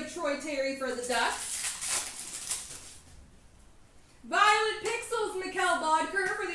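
Voices talking, broken for about two seconds by a hissy rustling noise and then a short lull before the talk resumes.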